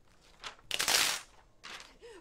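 Clear plastic carrier sheet of heat-transfer vinyl crinkling as it is handled. A loud rustle comes about a second in, with a shorter one before it and another near the end.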